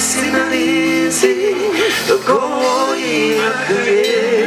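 Male voice singing a song with a live band, the melody held on long notes with vibrato over steady guitar, bass and drum accompaniment.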